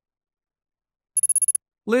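A short bell-trill sound effect about a second in: a rapid run of about seven metallic strikes over half a second, with a high ring, like a small electric or telephone bell.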